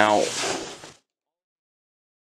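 A man saying a drawn-out "Now," with falling pitch, then dead silence, the audio cut off, for the second half.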